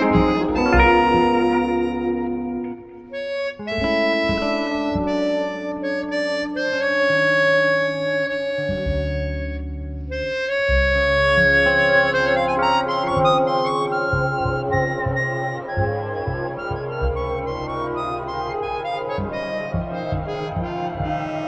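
Chromatic harmonica playing a sustained melody in a live jazz band, over guitar and plucked bass notes; the music thins briefly about three seconds in.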